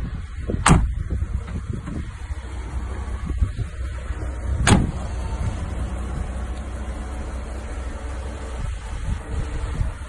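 Two heavy car doors on a Mercedes-Maybach G 650 Landaulet shut with solid clunks, one just under a second in and another a little before the middle, over a steady low rumble.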